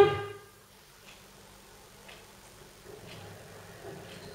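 A quiet room with faint, evenly spaced ticks about once a second, after a spoken word trails off at the start.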